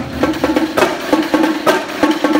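School band's drumline playing a cadence: sharp snare and rim strikes about four a second, with a low held note underneath.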